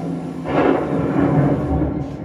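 Recorded thunder from a pre-show film soundtrack, played over the room's speakers: a rumbling crash starts about half a second in and rolls on.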